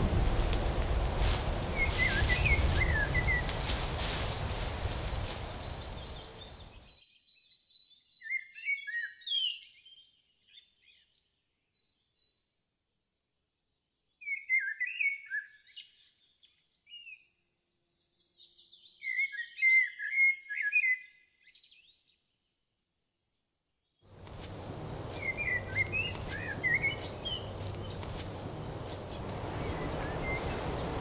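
Birds chirping in short clustered bursts over a steady hiss of outdoor background noise. About seven seconds in the background hiss fades out entirely, leaving only three clusters of chirps, and the hiss returns about twenty-four seconds in.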